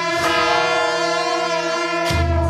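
Background music: held orchestral chords, a new chord coming in just after the start.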